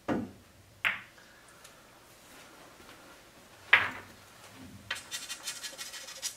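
Pool shot: the cue tip strikes the cue ball, and a sharp ball-on-ball clack follows just under a second later. Another sharp clack of a ball comes near four seconds in. In the last second, pool balls give a run of light clicks and rattles as they are handled on the table.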